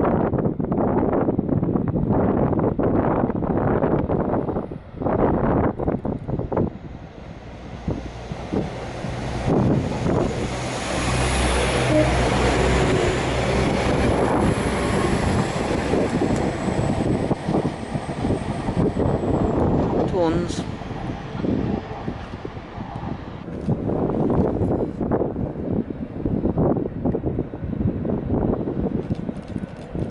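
A Northern passenger multiple-unit train runs past along the platform. Its wheel and motor noise builds and holds for about ten seconds in the middle, then fades, with a short falling tone just after.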